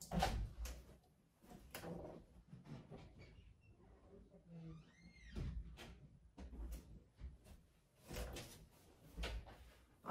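Faint household sounds from away from the microphone: scattered knocks and thuds of cupboards or doors, with a faint voice now and then, one high rising-and-falling call about five seconds in.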